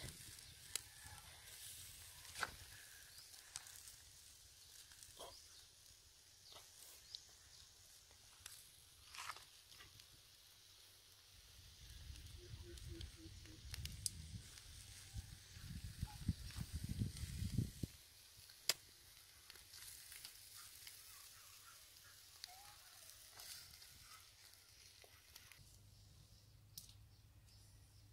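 Shrimp and squid skewers grilling over charcoal, with faint sizzling and scattered small crackles. A low rumble rises for several seconds past the middle.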